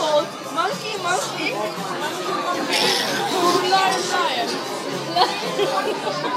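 Several people talking over one another in a busy room, with background music.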